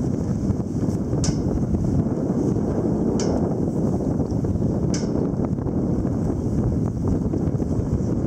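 Steady wind noise buffeting the microphone on the open deck of a sailing ship, with three brief high clicks about two seconds apart.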